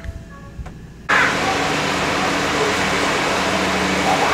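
Transit bus running at a stop: a steady low engine hum under an even rush of noise. It starts abruptly about a second in, after a brief quieter stretch.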